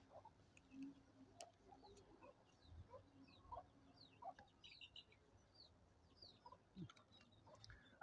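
Near silence with faint background birds: scattered short chirps and soft clucking from chickens.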